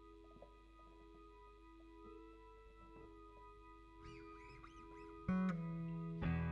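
Electric band equipment on stage before a song: a quiet held chord hangs under a few soft wavering guitar squeals, then a loud plucked electric guitar note rings out about five seconds in as the song begins.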